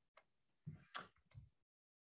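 Near silence, broken by three faint, short clicks.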